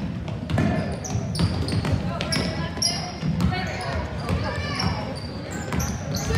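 Youth basketball game on a hardwood gym floor: the ball bouncing, sneakers giving short high squeaks, and a steady babble of voices from players and onlookers.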